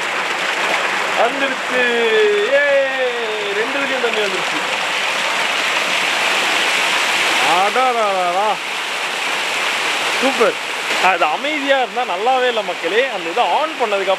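Water from a decorative stone fountain, pouring from spouts and spilling over its tiers into the pools below: a steady splashing rush. Voices talk over it at times, most in the last few seconds.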